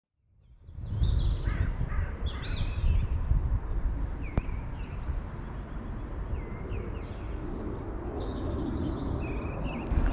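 Wind buffeting the microphone with an uneven low rumble, while several birds chirp and call over it. The sound fades in during the first second.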